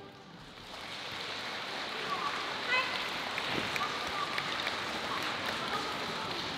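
Audience applause mixed with crowd chatter, rising over the first second and then holding steady.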